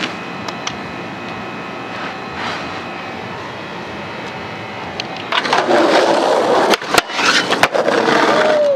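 A mop scrubbing across concrete, quietly. About five seconds in, skateboard wheels start rolling loudly over rough asphalt, and a few sharp clacks of the board come close together near the end.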